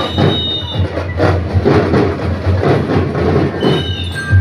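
A marching band playing in the street: a steady drum beat of about two strikes a second, with high, clear sustained notes near the start and again near the end.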